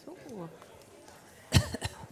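A person coughing to clear the throat: a short, sharp double cough about one and a half seconds in, at speaking loudness.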